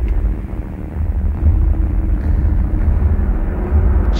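A steady, deep rumble, strongest in the very lows and dull, with little high end.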